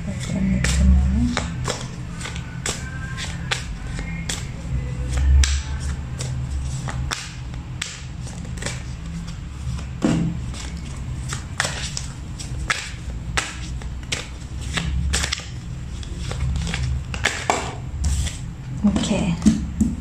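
Tarot cards being shuffled and dealt onto a table: a long run of quick, irregular card snaps and taps. Soft background music with a low steady drone underneath.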